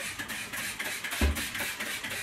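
Stiff brush scrubbing limescale deposits around a stainless steel sink and tap in quick, repeated strokes. A low thump about a second in.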